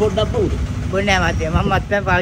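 Speech over the steady low rumble of a vehicle engine idling.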